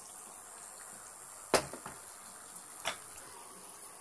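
Two sharp knocks of metal cookware being handled, about a second and a half apart, the first louder, over a faint steady hiss.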